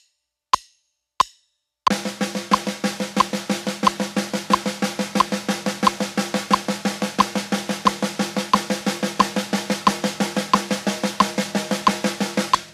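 A metronome click at 90 beats per minute ticks three times alone, then, about two seconds in, a snare drum single stroke roll starts over it, even strokes at about six a second that carry on steadily. It is played leading with the left hand, as a weak-hand exercise.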